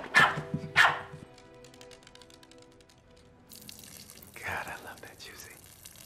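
A small dog barking twice in quick succession: two short, sharp yaps.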